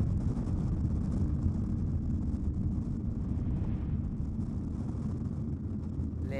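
Steady low rumble of a moving vehicle: engine and road noise, with no distinct events.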